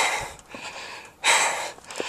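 A man breathing hard right at the microphone, two heavy breaths about a second apart: he is winded from a steep rock climb.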